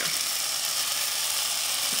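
Steady sizzling of diced tomatoes, peppers and onions frying in a pot as seasoned ground meat is tipped in.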